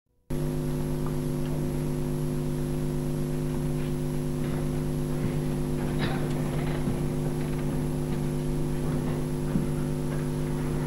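Steady low electrical hum with a thin high whine, unchanging throughout, with a few faint clicks and rustles.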